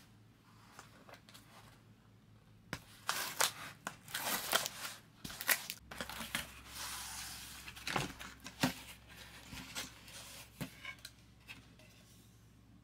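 A cardboard box being opened by hand: tape tearing and cardboard flaps scraping and rustling in an irregular run of sharp scrapes, with a longer smoother rustle about halfway through.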